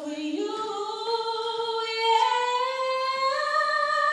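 Unaccompanied singing voice holding long notes that step upward in pitch, each note sustained about a second.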